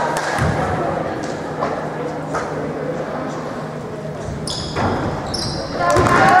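Basketball bouncing on a hardwood gym floor amid spectators' chatter, echoing in a large gymnasium, with two short high squeaks near the end.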